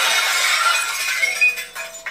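Sound effect of a window's glass shattering: a sudden crash at the start, then shards tinkling and clinking down for about a second and a half, over soft background music.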